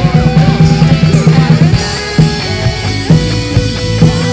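Live band playing a loud worship-rock song on electric guitars, bass and drum kit, with a steady driving beat.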